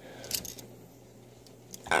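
A few faint light clinks of half-dollar coins shifting against each other in a hand-held stack in the first half second, then a low steady hum until a voice starts at the very end.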